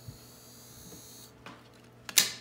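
A Snap Circuits electronic sound module giving out a faint, steady high-pitched electronic whine for just over a second, then stopping: the sound effect used for R2-D2 walking.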